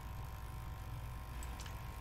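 Small pump of a TMS printhead unclogging machine running with a faint, steady low hum and a thin whine, pushing distilled water into a clogged Epson L1800 printhead.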